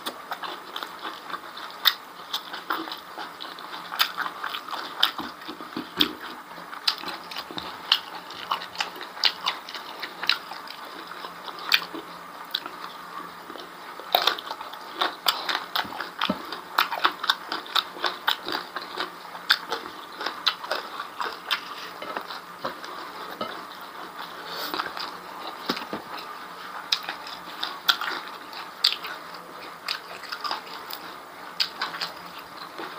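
Close-miked chewing of beef tripe and rice: a steady, irregular run of wet mouth clicks and smacks, several a second.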